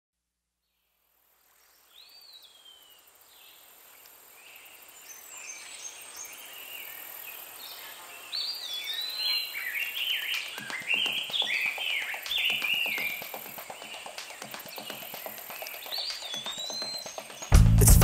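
Birdsong of many small birds, short chirps and whistled rising and falling notes over a soft hiss, growing louder after a silent first two seconds, with faint clicks joining about halfway. About half a second before the end the band comes in loud.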